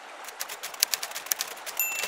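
Typewriter keys clacking in a quick, irregular run of sharp clicks, then a typewriter bell ringing one steady ding near the end, over the faint rush of a stream.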